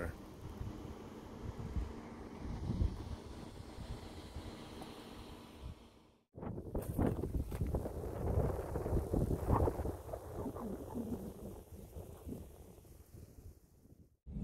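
Wind buffeting the microphone in uneven gusts, a low rumbling rush. It drops out briefly about six seconds in.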